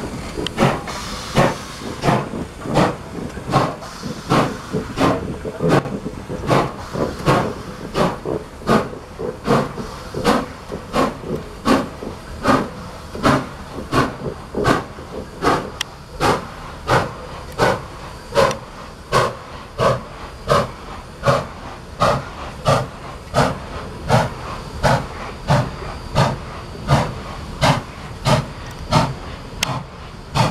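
Nickel Plate 2-8-4 Berkshire steam locomotive working slowly, its exhaust chuffing in an even beat of about two a second over a steady hiss of steam from the cylinders.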